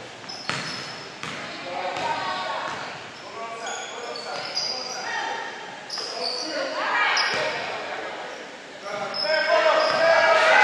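Basketball game in a gym hall: a ball bouncing on the hardwood court, sneakers squeaking, and players and spectators calling out, with the voices louder near the end.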